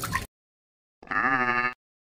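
A goat bleats once about a second in, a single wavering call lasting under a second. Just before it, at the very start, the tail of a water splash dies away.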